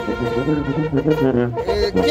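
Live band music: an instrumental passage of melody over a moving bass line, between sung lines of the song.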